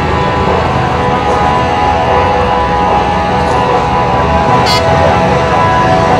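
Speedway motorcycle's 500cc single-cylinder methanol-fuelled engine running at steady revs as the bike rides along the shale track. A short sharp click about three-quarters of the way through.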